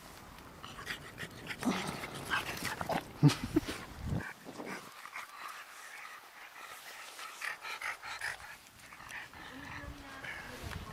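A dog making short vocal sounds, several in quick succession from about two to four seconds in, then fainter scattered sounds.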